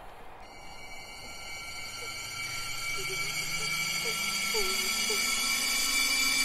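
Eerie soundtrack drone: a cluster of steady high tones enters about half a second in over a low tone that slowly rises in pitch, the whole swelling steadily louder, with a few faint short chirping glides over it.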